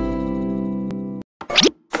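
Channel intro jingle: a held musical chord fading out, then cut off suddenly a little past halfway. A short rising-pitch sound effect follows in the brief gap.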